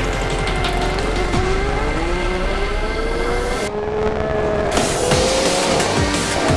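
Haas Formula One car's 1.6-litre turbocharged V6 running under acceleration, its pitch climbing in steps as it shifts up, over background music with a beat.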